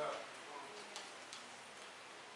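A quiet pause of faint room noise with two faint, sharp ticks about a second in.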